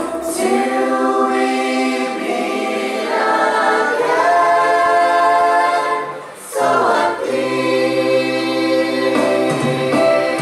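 Youth choir singing together through handheld microphones, in long held notes. The singing drops away briefly about six seconds in, then comes back.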